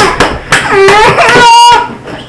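A child's voice shouting, ending in a high-pitched, drawn-out wail that stops a little before two seconds in, with a few sharp knocks just before it.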